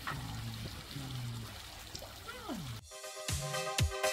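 Water spraying and trickling from a hose-fed sprinkler splash pool, with faint low voices. About three seconds in, electronic dance music with a heavy kick-drum beat cuts in suddenly and is the loudest sound.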